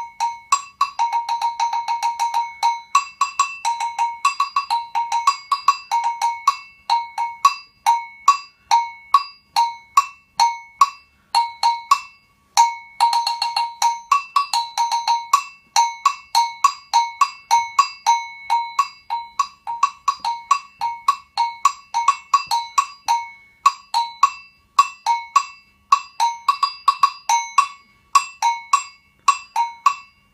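Brazilian agogô, a small double bell, struck with a wooden stick in a steady, syncopated rhythm that moves between its two close-pitched bells. There are quick flurries of strokes about a second in and again after a short break near the middle.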